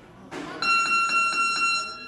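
A steady, high-pitched electronic beep, one unchanging tone, starts a little over half a second in and lasts just over a second. It is preceded by a brief rustle.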